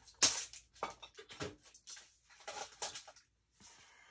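Craft supplies being handled and tidied on a desk: a string of irregular light knocks, clicks and paper rustles, pausing briefly near the end.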